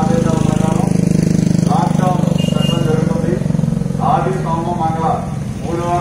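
A man's voice making an announcement in Telugu through a handheld microphone and loudspeaker, in short phrases with pauses. Underneath runs a loud, steady low drone of a vehicle engine idling, strongest in the first half.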